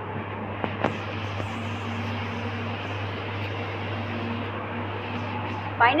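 Steady low machine hum over an even fan-like noise, with a couple of faint clicks just under a second in; a woman's voice begins at the very end.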